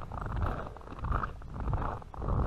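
Footsteps crunching on a packed snow trail at a walking pace, about three steps, over a low rumble.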